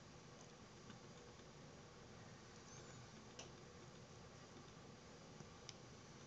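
Near silence: faint room hiss with a few soft, short clicks of a computer mouse, one about a second in, one in the middle and two close together near the end.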